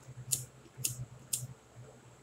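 Flint-wheel lighter struck three times, about half a second apart, each a short sharp rasp, with the flame lit by the last strike to light a cigarette.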